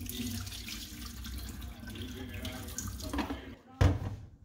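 Liquid poured out of an upturned film developing tank, splashing into a stainless steel sink for about three and a half seconds. Just before the end comes a single sharp knock as the tank is set down on the steel drainboard.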